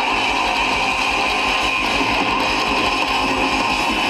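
Live hard-rock band playing loud, with electric guitars over a steady drum beat; the sound is dense and harsh, as if overloading the recording.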